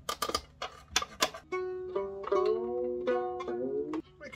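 A few sharp clicks as the violin's bridge and strings are handled, then violin strings plucked and left ringing while being brought up to pitch. Some notes glide upward as the pegs are turned.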